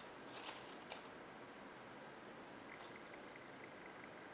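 Faint crackle and rustle of pine twigs and dry foliage as red berries on stems are pushed into a table arrangement. There is a short crackly cluster early, a sharper click just before a second in, and a few faint ticks later, over quiet room hiss.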